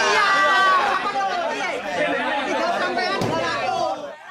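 Several men's voices shouting over one another at once, loud and overlapping, in a heated confrontation.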